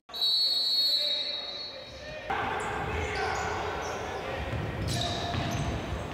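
Futsal match sound in a large sports hall: a high steady referee's whistle for about the first second, fading out, then hall ambience with the ball knocking and bouncing on the wooden court and distant voices.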